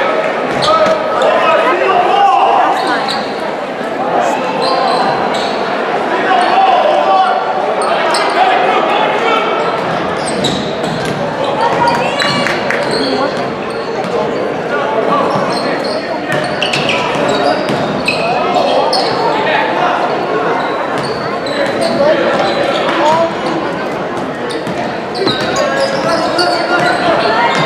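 Live basketball game in an echoing gym: a ball dribbling on the hardwood floor and sneakers squeaking briefly, over a continuous babble of spectators' and players' voices.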